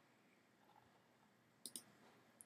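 Near silence, then two quick computer-mouse clicks close together near the end.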